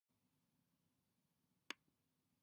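Near silence with a single short, sharp click near the end.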